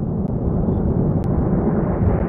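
A loud, steady deep rumble, a sound effect laid under the channel's logo outro, with a faint click about a second in.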